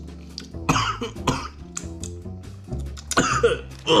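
A man coughing: two harsh coughs about a second in, then a run of coughs near the end. It is the lingering cough he has had for a while.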